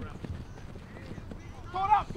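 Players shouting during a live flag football play, with a loud shout near the end, over scattered thuds of running footsteps on the grass.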